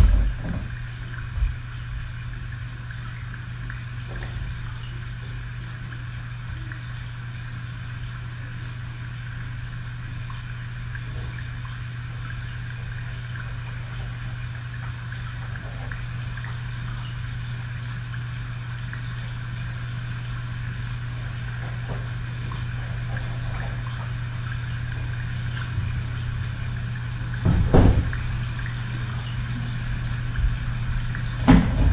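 Steady low hum with a faint hiss. There is a knock right at the start, a lighter one about a second and a half in, and a quick cluster of knocks about two seconds before the end.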